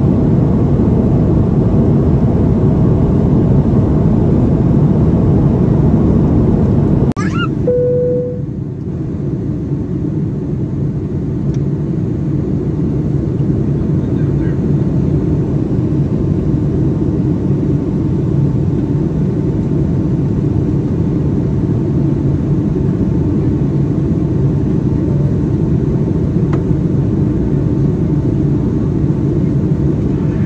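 Steady in-flight cabin drone of a Boeing 757-232 during descent: engine and airflow noise, heard from a window seat over the wing. About seven seconds in the level drops suddenly and a short tone sounds, then the drone continues a little quieter.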